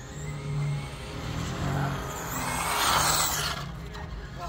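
A radio-controlled race car passing close by on the track. Its sound swells to a peak about three seconds in, then drops away with a falling whine.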